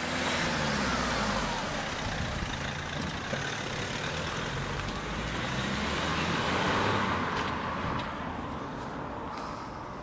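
A police patrol car driving off down the road, its engine and tyres heard as it pulls away, without a siren; it is loudest a little past the middle and fades toward the end.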